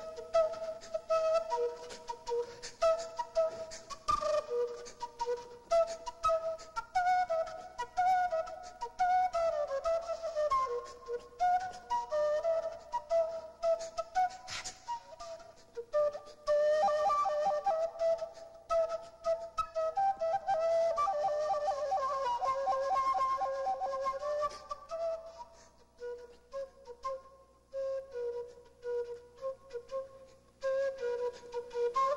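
Wooden end-blown flute played solo, a breathy improvised line of short melodic phrases. In the second half it holds one long wavering, fluttering passage, then returns to short, softer phrases near the end.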